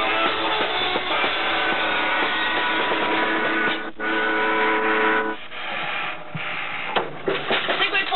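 Rock band with electric guitar playing the end of a song: a short break about four seconds in, then a final chord held for about a second and a half and left to ring out. Voices and a few knocks come in near the end.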